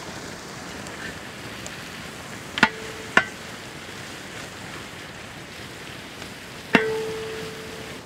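Sliced shallots frying in a large aluminium pot, a steady sizzle, while a long metal ladle stirs them. The ladle knocks against the pot three times, and the last knock leaves the pot ringing for about a second.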